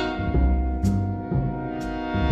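A jazz big band playing live: the band holds a chord over plucked upright bass notes, with a cymbal struck about once a second.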